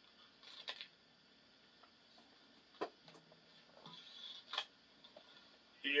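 Faint handling noise: a few light clicks and short rustles, with one sharper click about halfway through.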